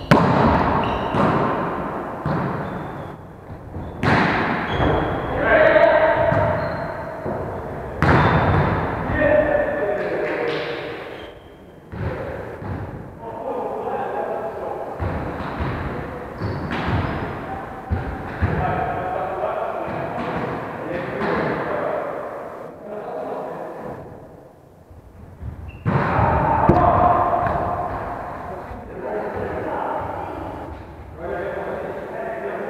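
Volleyballs being hit and bouncing on a wooden gym floor, several sharp strikes, the first few about four seconds apart, with players' voices in between, all echoing in a large sports hall.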